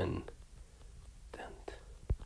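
A man's spoken word trails off at the start, followed by a soft, breathy, whisper-like sound about one and a half seconds in, over faint room hum.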